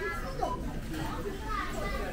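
Young children talking and calling out among the chatter of shoppers, over a steady low rumble.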